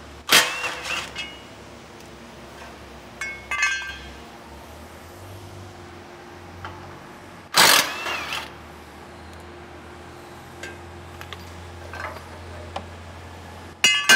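Cordless Ryobi impact wrench with a 17 mm socket, run in short bursts to back out a bolt under the truck's front end. There is a loud burst with a rising whine about half a second in, a shorter rattling burst around three and a half seconds, and another loud burst about seven and a half seconds in.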